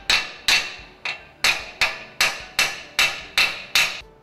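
Hammer striking the tension straps of a Grundfos SP 77/SP 95 submersible pump, about ten sharp ringing blows a little over two a second. They straighten the twist that torquing has left in the strap and level it with the nut.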